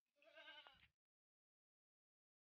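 A goat bleating once: a single short, wavering call under a second long, which then cuts off suddenly.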